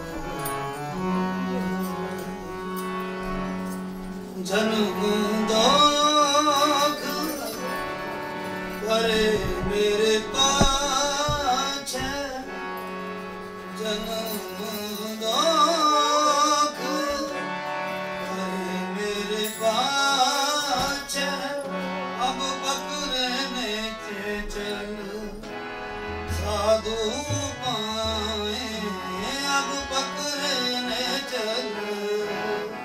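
Sikh keertan: a harmonium holds a steady drone and melody, alone for the first few seconds. Then a man sings the hymn over it in long, wavering melodic phrases.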